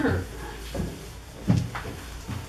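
A few short knocks and bumps, the loudest about one and a half seconds in, with people's voices murmuring underneath.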